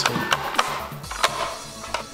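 A few light knocks and clatters in the first second or so as raw cut potato strips are tipped into a bowl, over background music.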